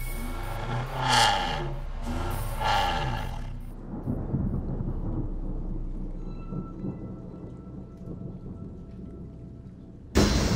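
A car engine revs up and falls back twice as the car pulls away on dirt. This gives way to a long, low rumble of thunder.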